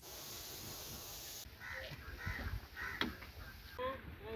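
Faint outdoor sound: a steady hiss that stops about a second and a half in, then several short, harsh bird calls spaced through the rest.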